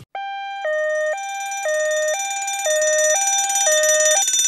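Electronic two-tone alarm siren sounding a hi-lo pattern, switching between a higher and a lower tone about twice a second. It starts abruptly and grows louder as it goes.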